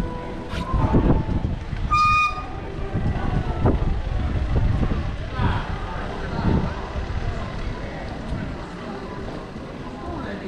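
Town-square street ambience with passers-by talking, and a short horn toot about two seconds in.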